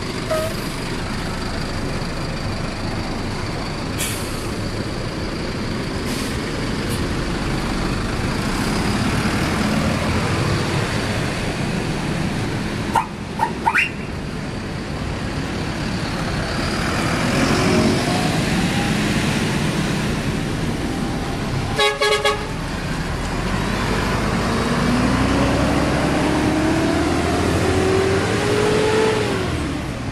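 City bus engines running as the buses pull away one after another, with a pitch that rises steadily near the end as one accelerates. Short horn toots sound a little before halfway, and a horn blast about two-thirds of the way through.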